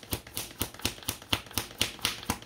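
A tarot deck being shuffled by hand: a quick, even run of crisp card taps and slaps, about five a second.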